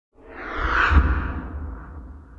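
Whoosh sound effect of an animated logo ident, with a deep rumble under it. It swells to a peak about a second in, then fades away.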